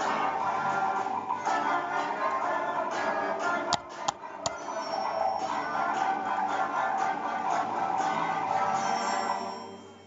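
School concert band of grade 7 players, brass and woodwinds with drum kit, playing a piece. About four seconds in the sound briefly dips and three sharp clicks stand out, and near the end the band's sound dies away.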